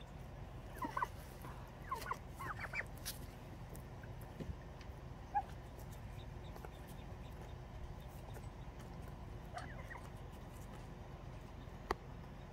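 Domestic white turkeys giving a few soft, short chirping calls: a couple about a second in, a run of them around two to three seconds in, and one more near ten seconds, over a faint steady outdoor background.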